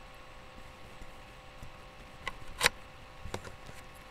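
A few sharp clicks and a knock from objects being handled close to the microphone, the loudest about two and a half seconds in, over a faint steady hum.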